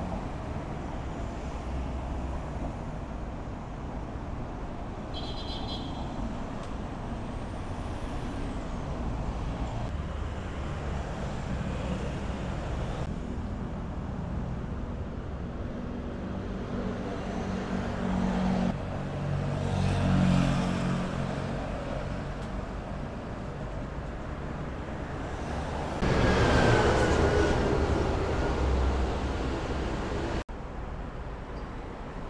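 Steady road traffic noise, a low rumble that runs through the whole stretch. A vehicle passes louder about two-thirds of the way through, and the traffic grows suddenly louder and fuller near the end.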